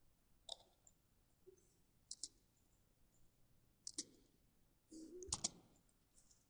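Sparse computer mouse and keyboard clicks against near silence: single clicks about half a second in and around four seconds, and quick double clicks around two seconds and just past five seconds.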